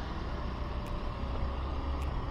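Motor scooter on the move: steady wind and road noise over the rider's microphone, a heavy low rumble, with the scooter's engine running evenly underneath.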